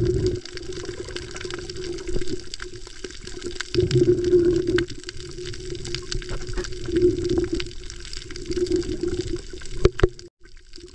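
Water rushing and sloshing around a camera held underwater while snorkeling, swelling in surges every few seconds, loudest about four seconds in. Scattered faint clicks run through it.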